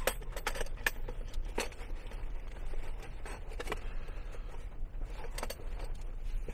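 Hard plastic tool carrying case being handled, unlatched and opened: a scatter of sharp plastic clicks and light rattles, spread out with gaps between them.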